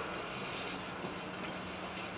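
Steady background noise with a faint low hum and no distinct events: outdoor ambience during a pause between speakers.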